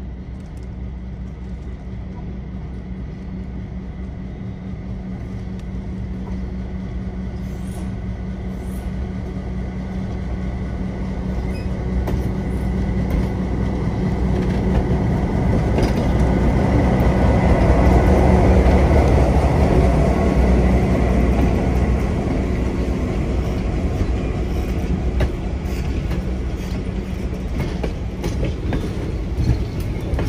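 Diesel locomotive approaching and passing at close range, its engine drone growing steadily louder until it is alongside about 18 seconds in, then easing as the passenger cars roll past on the rails.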